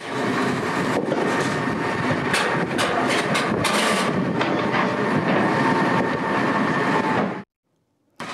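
Wheel loader's diesel engine running as the machine creeps along a railway flatcar, with several sharp clanks in the middle. The sound cuts off suddenly near the end.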